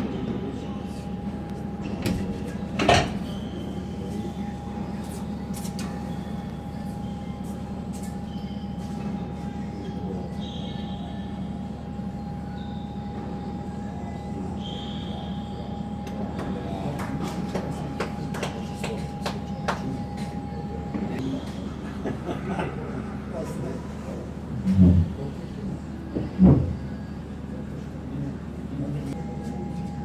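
Indoor tennis hall ambience: a steady ventilation-like hum with a constant higher tone, scattered sharp tennis ball hits and bounces from the courts, and brief shoe squeaks on the court surface. A loud knock about three seconds in, and two loud thumps a second and a half apart near the end.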